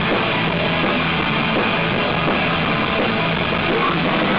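Live punk rock band playing loud and steady: distorted electric guitars, bass guitar and a drum kit, heard through the club's PA.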